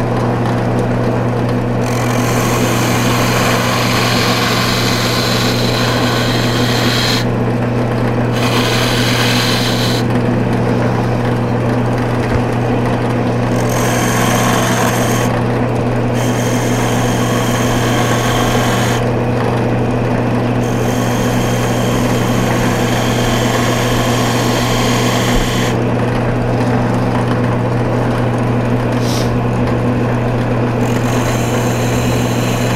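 Wood lathe motor running steadily while a turning chisel cuts the spinning finial, shaping its ball. The cutting hiss comes in passes of a few seconds each, broken by short pauses while the motor hum carries on.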